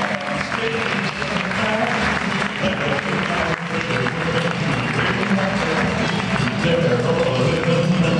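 Music playing in a theatre over steady audience applause and crowd voices.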